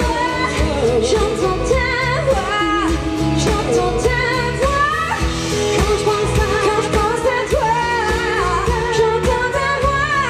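Live pop-rock band playing a song, with a woman singing the lead over acoustic guitar, electric guitar, bass and drums.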